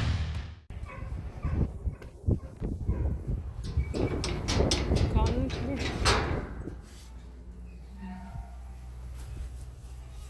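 Rusty metal pen gate being handled and opened: several sharp metallic clanks and rattles of the latch and hinge over a few seconds, with a dog's whining mixed in, then quieter footsteps on dirt.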